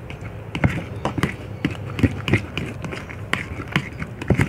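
A plastic spatula stirring and scraping wet slime mixture in a plastic cup: an irregular run of sticky clicks and taps, a few a second.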